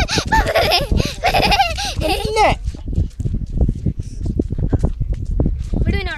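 High-pitched young children's voices for the first two and a half seconds, then mostly a low rumble with faint scattered sounds.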